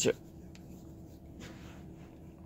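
Faint rustling of a hand rubbing over a face and against bedding, with a low steady hum underneath.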